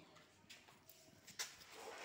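Near silence with a few faint, irregular footsteps and scuffs on a gritty concrete floor; the sharpest click comes about one and a half seconds in.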